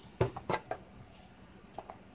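Handling noise from hands working a deerskin leather lace around a hand drum's handle: three short clicks and taps in the first second, then two fainter ones near the end.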